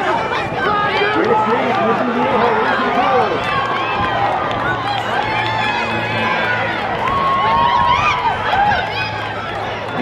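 Crowd of spectators shouting and cheering, many voices yelling at once and overlapping, with the noise swelling a little near the end.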